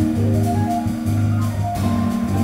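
Jazz trio playing: Fender Rhodes electric piano notes over held fretless bass notes, with drums and cymbals.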